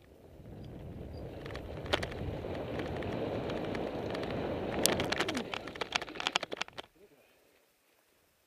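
Wind rumbling on the microphone, building over the first few seconds, with a run of sharp clicks and rattles in its second half, then cutting off suddenly near the end.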